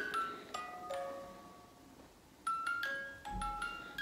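Electronic toy playing a slow chiming tune of single bell-like notes, with a pause of about a second in the middle. A soft low bump comes near the end.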